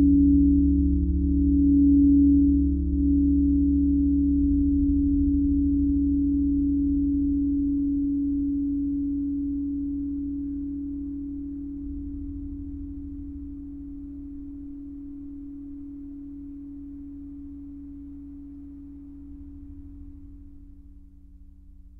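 Quartz crystal singing bowls ring out and slowly die away, the main tone pulsing in a slow wobble for the first few seconds. A low, steady drone from a modular synthesizer fades along with them.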